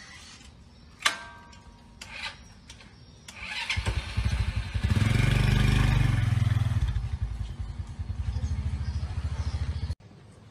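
Small underbone motorcycle engine being kick-started: a few sharp clicks of the kick lever, then the engine catches about three and a half seconds in, is revved up and settles into a steady pulsing idle.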